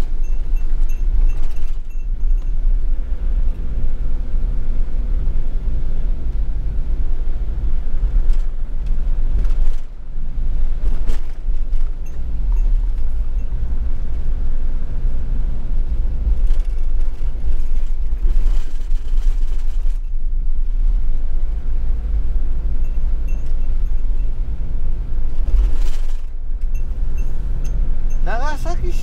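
Camping car driving on a wet road, heard from inside the cab: a steady, loud low rumble of engine and road noise.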